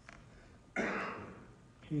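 A man clearing his throat once, a short sudden rasp about a third of the way in.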